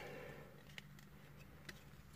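Near silence, with two faint clicks from the plastic toy figure being handled, one a little under a second in and one near the end.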